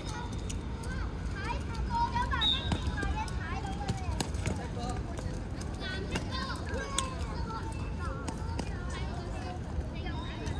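Young footballers' high-pitched voices shouting and calling out across the pitch in two spells, over a steady low outdoor rumble.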